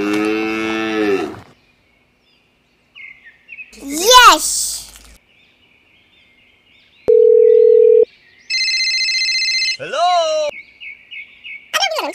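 A string of added sound effects. It opens with a cow's moo fading out. Then comes a loud rising-and-falling cartoonish call, a steady beep lasting about a second, a pulsing electronic ring, and another short call near the end.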